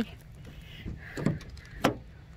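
Wind rumbling on the microphone, with a couple of soft handling sounds about a second in and a single sharp click near the end.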